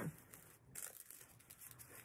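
Faint rustling and scratching of a felt piece being pressed by hand onto a wooden banner pennant, in a few short bursts.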